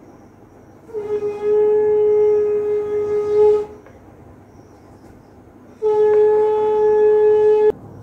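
A conch shell (shankh) blown twice in long, steady, single-pitched blasts for evening puja. The first blast catches after a few short sputters, and the second stops abruptly.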